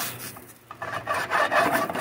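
Beads of water sizzling on a hot, dry metal frying pan, a crackly hiss that picks up about a second in. The dancing beads show the pan is hot enough to fry.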